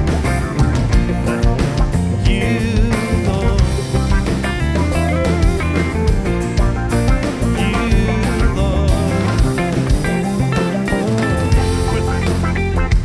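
Full worship band (drum kit, electric bass, guitars and keyboards) playing busily, every player adding fills and extra notes: the song deliberately overplayed.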